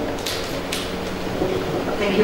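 Rustling handling noise with a few faint clicks from a handheld microphone being moved and passed on.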